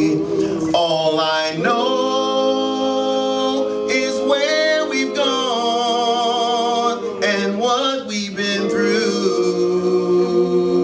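A male vocal quartet singing a cappella in close harmony, holding long chords with vibrato that change several times.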